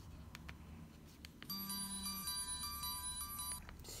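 LG G360 flip phone playing its short electronic power-on melody, about two seconds long, with a brief low hum under its opening. A few faint clicks come before it.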